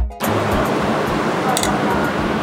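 Background music with a beat cuts off a fraction of a second in, giving way to steady background noise. A light clink of metal cutlery on a plate comes near the end.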